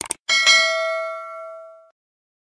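A couple of quick mouse-click sound effects, then a bright notification-bell ding struck twice in quick succession that rings on and fades out over about a second and a half.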